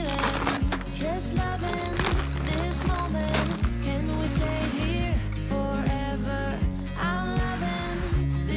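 Background music: a pop song with a sung vocal melody over a steady bass line.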